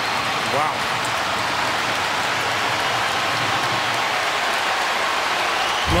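Steady stadium crowd noise just after a goal, with a commentator's short "wow" about half a second in.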